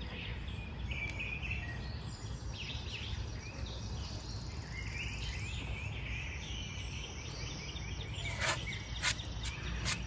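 Outdoor ambience: birds chirping over a steady low background rumble, with a few sharp clicks near the end.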